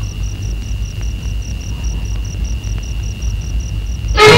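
Steady low rumble of background noise with a faint continuous high whine and a faint high chirp repeating about five times a second.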